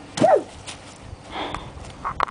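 A short, loud yelp that rises and falls in pitch, followed about a second and a half in by a softer, breathy rush of noise.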